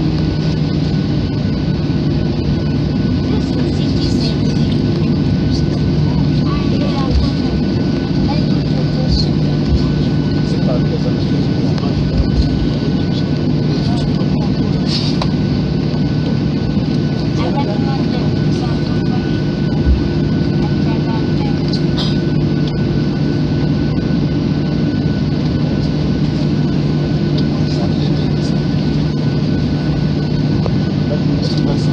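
Airliner engines heard from inside the cabin as the plane rolls along the runway: a loud, steady drone with a constant low hum, which shifts slightly in pitch about a second in, and a few brief thumps.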